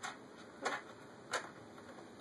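Three light ticks about two-thirds of a second apart, from a baby's hands knocking at a white plastic bucket and its wire handle.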